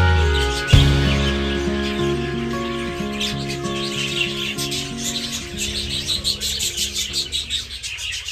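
A flock of budgerigars chirping busily throughout, under background music with sustained notes.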